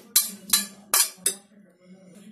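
Stainless-steel bowl and spoon clinking, four sharp knocks in quick succession, as chopped green peas are tipped and scraped out into a serving bowl.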